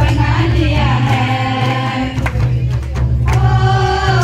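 A group of women singing a Sadri wishing song together into handheld microphones, amplified, with a steady low beat and light percussion underneath.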